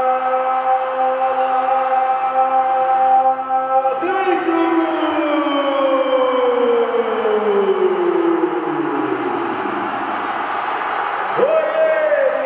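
A male football commentator's long drawn-out goal cry, held at one high pitch for about four seconds, then sliding slowly down in pitch for about six more. Near the end a new shout rises and falls.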